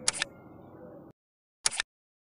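Two short, sharp clicks of a computer-mouse click sound effect, about a second and a half apart, from an animated subscribe button being clicked and then its notification bell.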